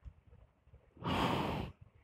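A single breath, a sigh-like exhale close to the microphone, lasting under a second about a second in.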